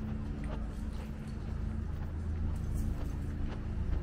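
Footsteps of a person walking on a paved street, light, irregular ticks over a steady low hum of city and machinery noise.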